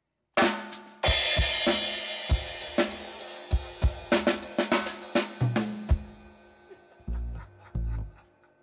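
Drum kit played live: a single hit, then a cymbal crash about a second in, followed by a fast run of snare, tom and bass drum strokes under a long ringing cymbal wash. Two heavy low drum hits come near the end.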